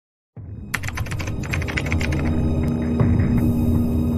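Section-transition sound effect: a low droning hum with a fast run of clicks begins about a third of a second in. About two seconds in, the clicks give way to a steady held tone over the hum.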